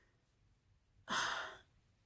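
A woman sighs once, about a second in: a short, breathy exhale.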